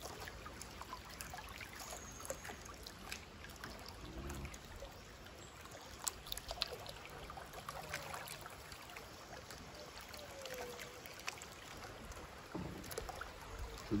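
Faint, steady sound of river water flowing and lapping around a bamboo raft, with a few soft scattered clicks.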